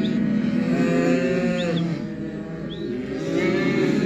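Several Hereford calves mooing at once, their calls overlapping and rising and falling in pitch, a little quieter for a moment about halfway through.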